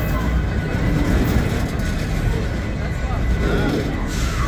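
Freight cars rolling past very close: a loud, steady rumble and clatter of steel wheels on the rails.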